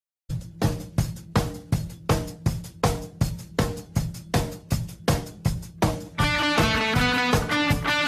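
A rock song intro: sharp, evenly spaced hits about three a second over a low sustained note. About six seconds in, the full band comes in with electric guitar.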